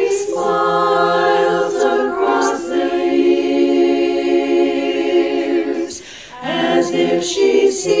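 Women's a cappella chorus singing held chords in several voice parts, with a short gap for breath about six seconds in.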